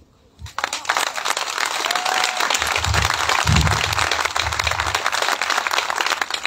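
Audience applause, breaking out about half a second in and going on as a dense, steady clapping.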